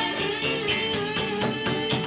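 Live rock band playing: electric guitars and bass with a drum kit, held guitar notes over a steady beat of drum hits.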